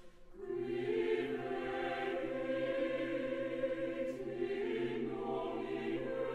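Mixed choir singing Latin sacred text in long, sustained chords. It comes back in after a brief hush about half a second in.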